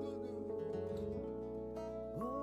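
Soft band intro: acoustic guitar over long held notes, with a voice speaking briefly in the first second.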